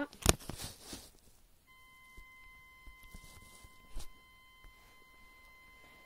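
Handling noise from a plastic emergency door release being worked open by hand: a sharp click just after the start, a quick run of smaller knocks, then a couple of lighter knocks later. From about two seconds in, a faint steady high tone sounds underneath.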